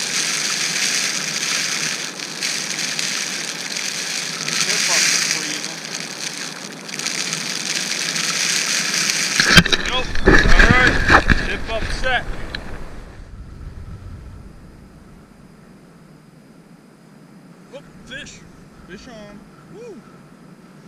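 Wind gusting across an open frozen lake and blowing on the microphone. It is loudest and deepest in a heavy buffeting spell about ten seconds in, then drops away to a quiet background for the rest.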